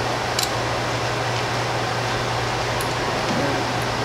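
Steady background hiss with a low hum, and a faint click or two of plastic cube pieces being handled.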